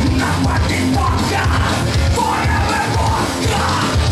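Live punk rock band playing, with a singer yelling over the band; the shouted vocal grows stronger in the second half.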